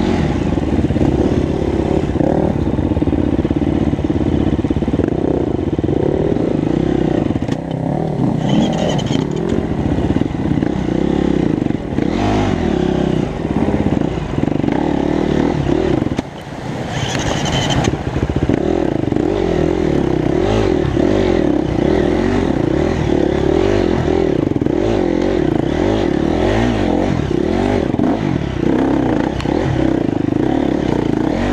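Enduro dirt bike engine running under changing throttle as the bike picks its way over a rocky stream bed, with rocks clattering under the tyres. About halfway through the engine briefly drops off and water splashes as the bike goes through the stream.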